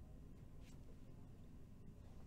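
Near silence: a faint, steady low background rumble, with a brief faint hiss about two-thirds of a second in.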